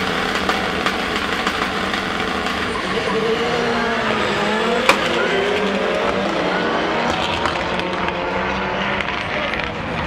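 Several rallycross cars on the start grid launching and accelerating away together, their engines rising and falling in pitch through the gear changes, with a single sharp crack about five seconds in.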